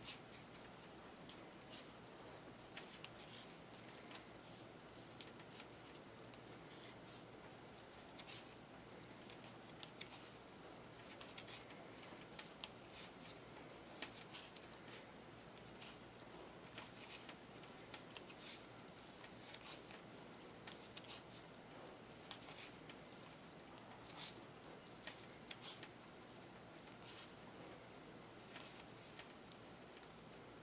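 Faint, irregular clicking and tapping of circular knitting needles as stitches are worked in a purl one, knit one rib, with soft handling of the yarn over a quiet room hiss.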